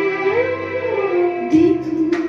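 Backing track of a Hindi film song with a female voice singing a held, gliding line; percussion comes in about one and a half seconds in.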